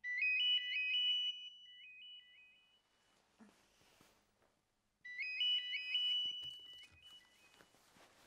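Mobile phone ringing with an incoming call: a short electronic ringtone melody of quick high notes, played twice, the second time about five seconds in.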